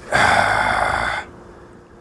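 A man sighs into a close microphone: one loud, breathy exhale about a second long that stops abruptly.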